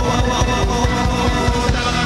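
Live rock band playing through a PA: distorted electric guitars over a steady drum-kit beat, with sustained chords.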